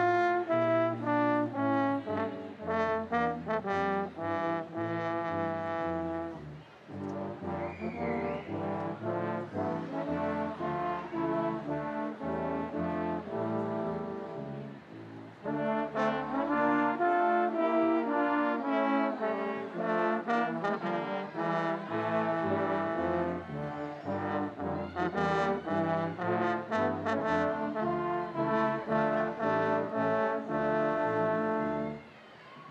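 A brass ensemble playing processional music: sustained chords moving from note to note, with brief dips in volume about seven seconds in and again around fifteen seconds.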